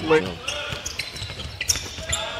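Basketball game sound on the court: the ball bouncing on the hardwood floor amid player movement, with a few short high squeaks near the end.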